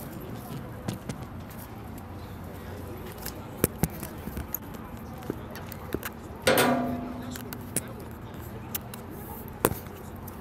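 Sharp taps and knocks of a phone being handled while it records, over steady outdoor background noise, with one short shouted call about six and a half seconds in.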